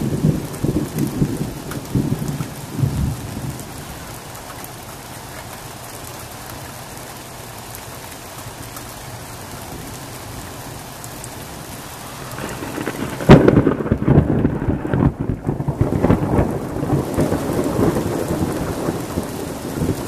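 Thunder rolling and dying away over the first few seconds, over a steady hiss of rain. About 13 seconds in a sharp thunderclap cracks out, the loudest sound, and breaks into long rolling rumbles.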